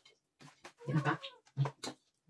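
A toddler makes short wordless vocal sounds while being spoon-fed, two brief ones about halfway through, with a few sharp clicks in between.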